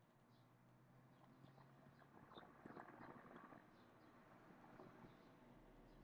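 Near silence: faint room noise, with a short cluster of soft clicks about two to three seconds in and faint high chirps now and then.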